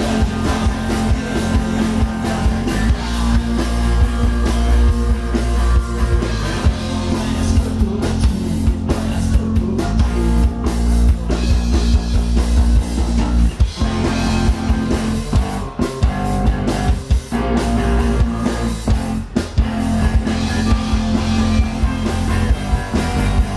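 Live punk band playing loud: distorted electric guitars, bass and a drum kit pounding steadily through the PA.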